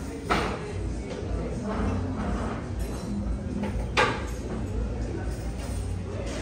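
Restaurant dining-room ambience: indistinct voices and background music, with two sharp knocks, one just after the start and a louder one about four seconds in.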